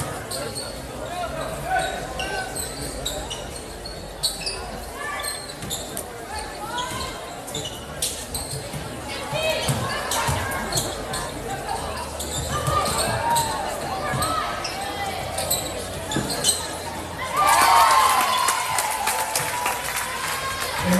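A basketball bouncing on a hardwood gym floor, with sharp knocks and shoe squeaks, under the voices of players and spectators. About three-quarters of the way through, the crowd breaks into loud cheering and shouting.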